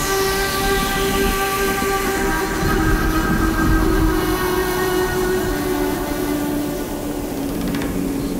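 A beatless passage in an electronic mix: several long held tones over a steady rushing wash of noise, after a falling sweep. Some of the held tones drop in pitch a little past the middle.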